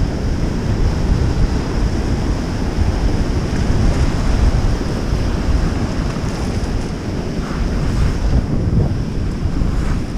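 Whitewater rapids rushing and churning around a kayak's bow in high flood water: a loud, steady rush with a heavy low rumble.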